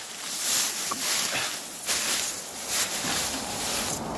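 Tall dry grass rustling and swishing against clothing and a pushed bicycle, in several separate brushes about a second apart.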